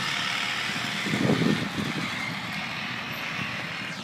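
Medium-duty pickup truck carrying a roll-off dumpster driving past, its engine and tyres loudest about a second in, then fading as it moves away.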